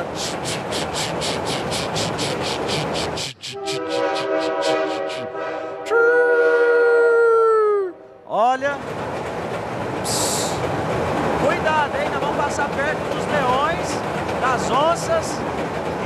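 Train sound effect: a fast, even steam-locomotive chuffing for about three seconds, then a multi-note train whistle held for several seconds, its loudest note sliding down in pitch as it ends. Children's voices chatter for the rest of the time.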